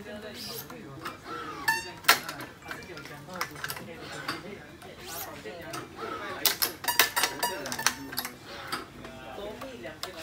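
A Victor badminton racket being strung at high tension (32 lb) on a stringing machine: repeated sharp clicks and snaps of the string and clamps as the string is woven and pulled. Voices talk in the background throughout.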